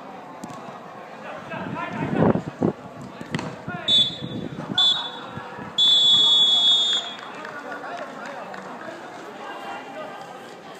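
Referee's whistle blowing two short blasts, then one long blast of about a second, with players shouting on the pitch.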